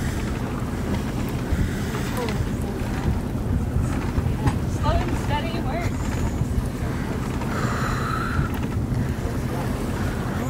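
Wind buffeting the microphone on the deck of a sailing schooner, a steady low rumble, with faint voices in the background.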